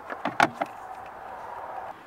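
Clicks and knocks as a handheld battery tester and its clamp leads are picked up and handled, about five in the first moment, then a steady soft rushing noise that cuts off suddenly near the end.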